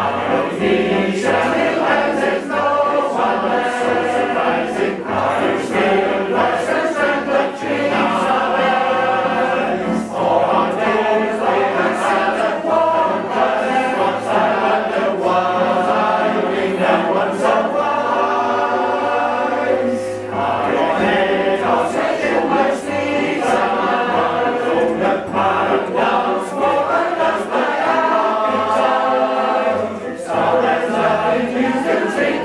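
Male voice choir singing in full harmony, continuously, with low bass notes underneath.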